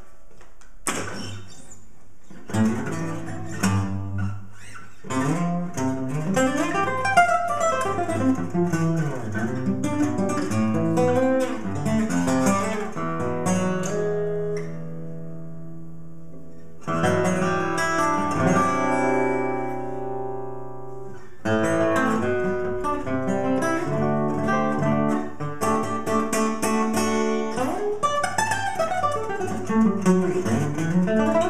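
1987 Lowden L27FC cutaway steel-string acoustic guitar played fingerstyle, a flowing run of picked notes and chords. Twice, about halfway and again about two-thirds through, the picking stops and a chord is left to ring out and fade before the playing picks up again.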